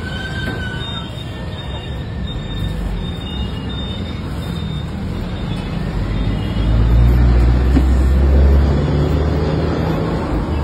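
Street traffic noise. A motor vehicle's low engine rumble swells up about six and a half seconds in and eases off near the end.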